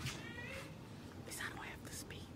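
Faint whispering and low voices from a standing audience in a quiet hall, with a brief high-pitched voice near the start.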